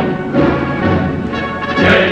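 Orchestra with brass playing an instrumental bar of a Soviet-style marching song, with no singing in it.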